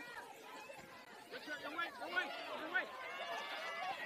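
Faint voices from the pitch and stands at a soccer match: players calling out and spectators chattering, with a few brief high-pitched shouts in the second half.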